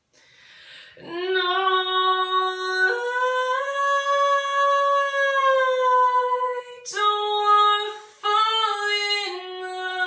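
A woman's solo voice singing a cappella in long held notes, with no instruments. After a breath in, one note is held, then it steps up to a higher note held for several seconds, and shorter phrases follow near the end.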